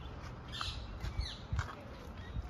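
A few short, high bird chirps, one a quick downward-sliding note about a second in, over a steady low outdoor rumble.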